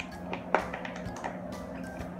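Plastic breastmilk storage bag being pulled open at its zip seal: a few small crinkles and clicks, the sharpest about half a second in, over soft background music.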